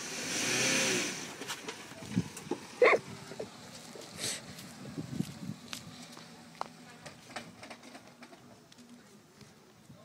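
A small manual-gearbox Toyota car's engine swells briefly as the car pulls away, then runs more quietly and fades as it drives off. A short burst of a person's voice comes about three seconds in.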